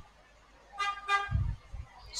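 Two short horn toots in quick succession, each about a quarter second long, followed by a low thump.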